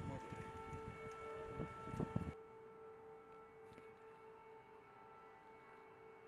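A faint siren held at one steady pitch over street background with a few knocks. A little over two seconds in, the background drops away and the siren tone carries on alone, quieter.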